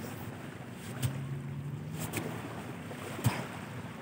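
Steady wind rushing over the microphone during push-ups. About a second in, a low, level hum of effort from the man is held for about a second, and a short sharp click comes a little past three seconds.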